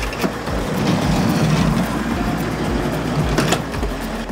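A van's sliding side door unlatched and rolled open along its track: a click near the start, a rumbling slide, then a sharp knock near the end as it reaches the open stop.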